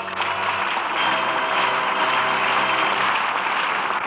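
Studio audience applauding, with held music chords underneath that fade out about three seconds in.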